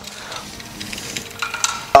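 Faint scraping and rustling of a tape measure blade being pulled out and slid up a metal post, with a sharp click near the end.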